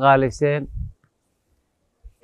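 A man speaking for about the first second, then the sound cuts off to dead silence.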